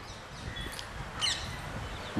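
Faint bird chirps over low background noise: a short high note a little under a second in, then a quick high trill just past the middle.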